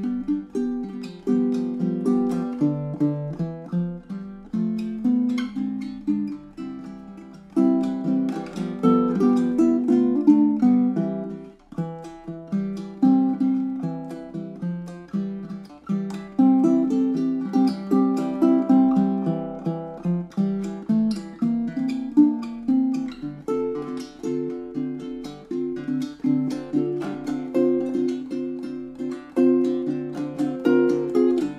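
Custom 19-inch baritone ukulele with Amazon rosewood back and sides and a sinker redwood top, played solo fingerstyle. It carries a tune of plucked notes and chords that ring and fade one after another.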